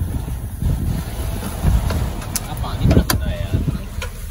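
An uneven low rumble with indistinct voices, and two sharp taps about two and three seconds in, footsteps on the metal rungs of a boat's boarding ladder.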